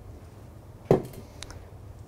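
A single sharp knock of a kitchen utensil against a stainless-steel mixing bowl about a second in, followed by a couple of faint clicks, over a low steady hum.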